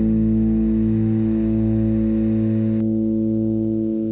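A distorted electric guitar chord held and ringing out as the song's final chord. It is steady with a slow pulsing in the lowest notes, and the high hiss above it cuts off suddenly about three seconds in.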